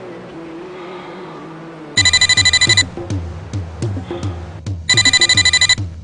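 Electronic landline telephone ringer trilling twice: each ring is a rapid, shrill warble under a second long, the two about three seconds apart. Background music runs underneath and picks up a low, repeating drum beat with the first ring.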